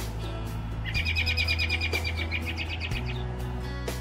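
Background music with steady low notes. About a second in, a bird gives a rapid, high chirping trill that lasts about two seconds.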